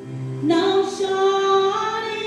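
A woman sings a Portuguese gospel song through a handheld microphone over a backing track of sustained chords. Her voice comes in about half a second in and holds one long note.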